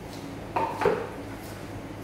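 Two short clinks with a brief ring, about a third of a second apart, over a steady low hum.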